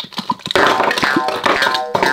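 Wet slime squelching and popping as it slides out of the bottle, then from about half a second in a louder burst of bright music with held tones.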